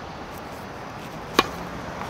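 Tennis racket striking the ball on a serve: a single sharp pock about one and a half seconds in, over steady background noise.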